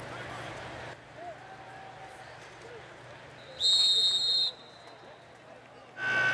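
An official's whistle blown once, a shrill steady blast just under a second long about three and a half seconds in, blowing the play dead after the tackle. Low stadium crowd noise runs underneath.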